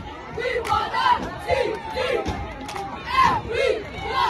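Crowd noise at a football game: several voices yelling and cheering over one another in a string of short shouted calls.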